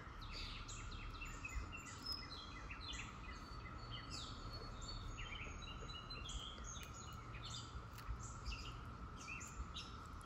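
Faint chorus of songbirds: many short, quick chirps and falling notes overlapping throughout, over a thin steady hum and a low background rumble.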